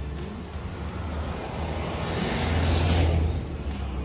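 A rushing noise that swells to a peak about three seconds in and then falls away quickly.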